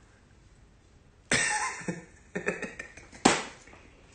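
A man laughing hard in a few sudden bursts, with coughs mixed in, starting about a second in.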